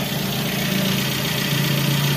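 Suzuki APV's four-cylinder engine idling steadily with an even note. A new ignition coil has replaced a weak one, and the owner says it no longer misfires.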